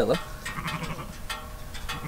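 Sheep bleating faintly in the background, with low wind rumble on the microphone.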